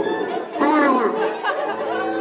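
A person's voice over background music, with chatter around it.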